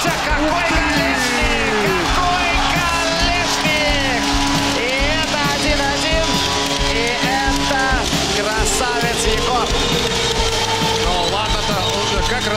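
Background music over the game sound of an ice hockey broadcast, with voices mixed in.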